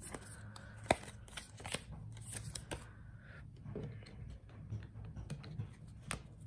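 Light Seer's Tarot cards being handled and shuffled by hand: quiet, scattered snaps and slides of the card stock, the sharpest snap about a second in, over a faint steady low hum.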